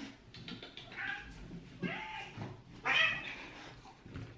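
Domestic cat meowing three times, about a second apart, while being rubbed dry in a towel after a bath: an upset, protesting cat.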